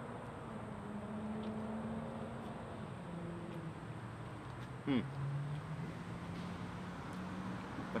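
A man humming a long, low closed-mouth "mmm" of approval as he chews a mouthful of taco, the pitch stepping down a couple of times. A short "hmm" comes about five seconds in.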